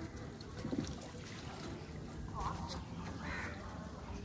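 Water splashing and dripping off a fishing net as it is hauled up out of river water, over a steady low rumble.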